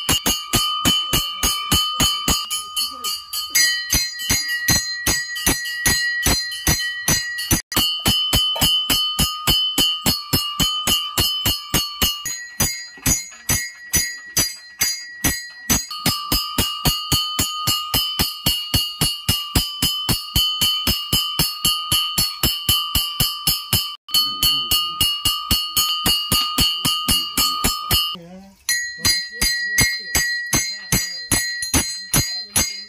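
Brass puja hand bell rung rapidly at an even pace, each strike keeping a steady metallic ring going. The ringing pitch changes several times, with short breaks about a third of the way in and near the end.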